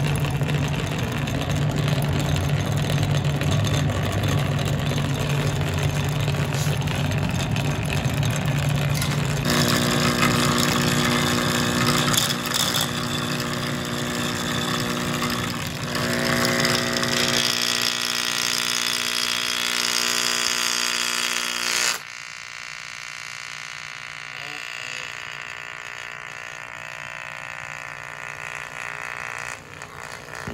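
Altec Lansing foam-surround subwoofer driver being overdriven to destruction, blaring loud distorted sound with steady buzzing tones while its cone flaps. About two-thirds of the way through the sound drops abruptly to a quieter level, and by the end the driver is smoking as its voice coil burns.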